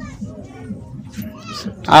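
Faint background voices murmur in a room between interview questions. A short high-pitched call rises and falls about a second and a half in, and a voice starts loudly just at the end.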